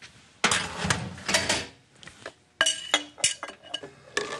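Metal cookware and utensils clattering as they are handled and set down. About two and a half seconds in come a few sharp clinks with a brief metallic ring.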